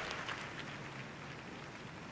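Faint steady room hiss with no distinct sound event.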